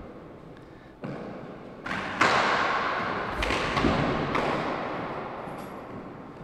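Hard handball thudding against the floor and walls of an enclosed court: a handful of sharp knocks, roughly a second apart, each ringing on in the court's long echo.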